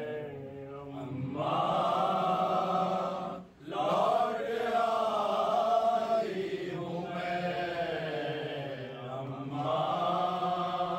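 Men's voices reciting an Urdu noha, a slow sung lament chanted together, with a brief pause for breath about three and a half seconds in.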